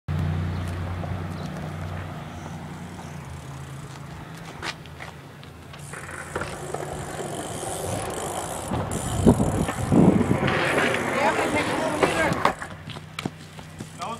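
A BMX bike rides and lands on concrete, with two heavy thumps about nine and ten seconds in, followed by excited shouting. A low steady hum fades out over the first few seconds.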